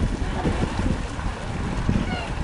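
Wind buffeting the camera's microphone: an uneven low rumble that rises and falls throughout.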